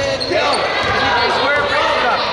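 Live basketball game sound in a gym: sneakers squeaking in many short chirps on the hardwood court as players run in transition, a ball being dribbled, and players' voices, echoing in the hall.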